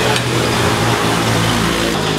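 Steady machine hum: a low, even drone with a broad hiss over it, holding level throughout with no strokes or changes.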